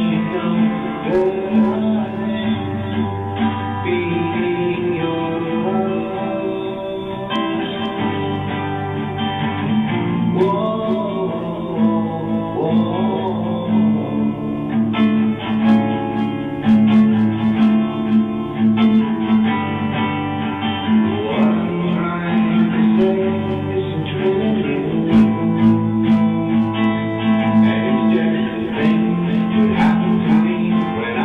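A man singing a song to his own acoustic guitar accompaniment.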